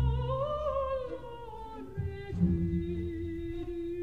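Operatic soprano holding a long note with vibrato, over low orchestral chords. The note bends up and back down in the first two seconds, then settles onto a lower, steadier note. The low chords sound at the start and again about two seconds in.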